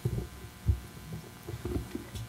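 Microphone handling noise: irregular low thumps and bumps as a microphone is gripped and moved, a few knocks in quick succession near the start, about two thirds of a second in, and again near the end.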